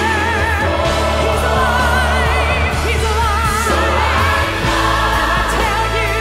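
Gospel song performed live: a woman's lead voice held in long notes with wide vibrato, over a vocal group, choir and band. The bass drops to a lower note about four and a half seconds in.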